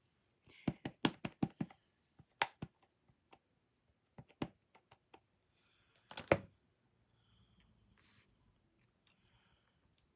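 Quick series of light plastic taps as a handheld ink pad is dabbed against a clear acrylic stamp block to re-ink a heart stamp, then a few scattered taps and one louder single knock about six seconds in.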